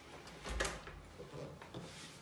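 An interior door knocking once about half a second in as it is pushed open and walked through, followed by a few faint knocks and rustles.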